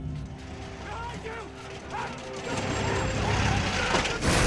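A vehicle engine running low and steady, with faint, indistinct voices over it; the sound grows louder in the second half.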